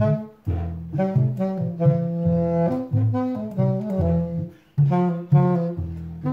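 Saxophone playing a jazzy melody over the low plucked notes of a homemade washtub bass, made from a galvanized trash can, a pole and a string. There are two short breaks between phrases: about half a second in and near five seconds in.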